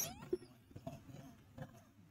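Faint sounds of rhesus macaques feeding on chickpeas scattered over a concrete floor: a brief high call at the very start, then a few soft scattered clicks as they pick up the grains.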